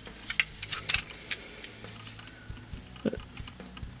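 Plastic model kit parts being handled and set down, giving scattered light clicks and rattles, most of them in the first second.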